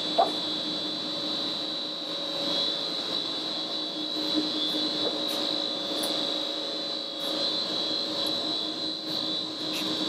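Steady machinery hum with a constant high whine, as from an electric blower motor and fan running. A short click sounds just after the start as a door latch is worked.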